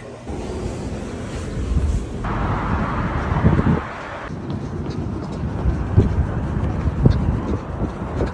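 Outdoor city ambience: a steady low rumble with wind on the microphone, a stretch of hiss about two seconds in, and a few dull thuds.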